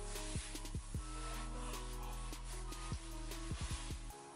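Quiet background music with held notes over a low hum; the hum cuts off at the very end.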